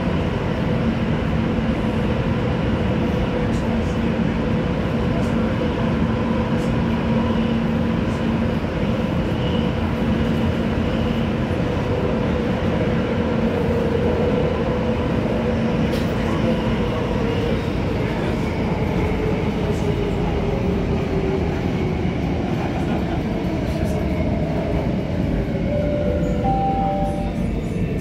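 Interior running noise of a Downtown Line C951 metro train in a tunnel, with a steady motor whine that falls in pitch through the second half as the train brakes into the station. A short two-note chime sounds near the end.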